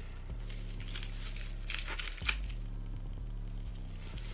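Plastic bubble wrap crinkling as it is torn and pulled open, with a cluster of louder crackles about two seconds in. A steady low electrical hum runs underneath.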